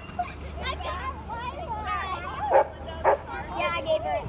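Children's voices chattering, broken by two short, loud yelps about half a second apart, roughly two and a half and three seconds in.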